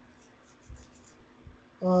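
A quiet pause with a few faint, short ticks or scratches, then a drawn-out hesitant 'uh' near the end.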